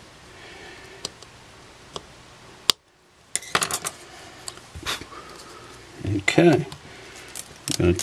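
Light clicks and clatter of a small camera lens assembly and other small parts being handled and set down on a stainless steel work surface, with one sharper click partway through.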